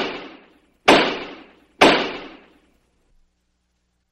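Three loud, sharp impacts about a second apart, each dying away over about half a second with an echoing tail.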